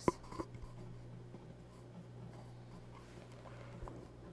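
A few sharp clicks near the start, from a computer mouse or keyboard starting playback. Then faint room noise over a steady low electrical hum.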